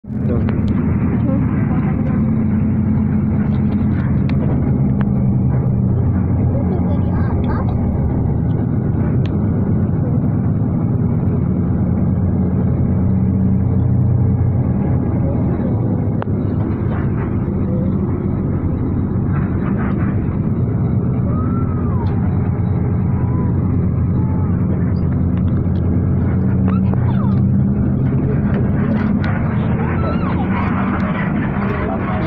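Bus engine droning steadily with tyre and road rumble, heard from inside the passenger cabin while the bus is moving. A few faint voices come through the drone.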